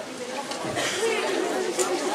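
Indistinct chatter of several voices talking at once, with no words clear enough to make out.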